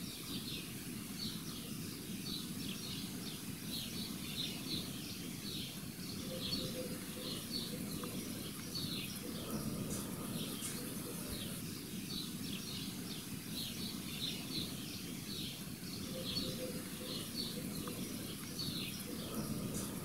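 Small birds chirping throughout, short high calls coming several times a second, over a steady low rumble of outdoor background noise.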